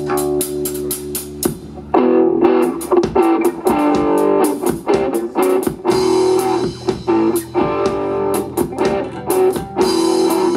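Live rock band playing an instrumental passage on electric guitar, bass guitar, keyboard and drum kit, with a steady drum beat and cymbals. The full band comes in louder about two seconds in.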